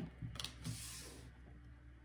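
A tarot card being laid down on a wooden tabletop: a few faint, soft ticks and a brief rustle about half a second in.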